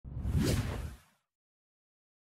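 A whoosh sound effect with a low rumble under it, about a second long, swelling to its peak about half a second in and then fading out.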